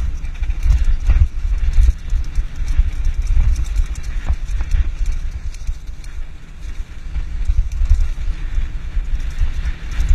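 Wind buffeting the microphone over the rattling and knocking of a vehicle coasting fast down a rough dirt track, with irregular bumps and jolts from the uneven ground.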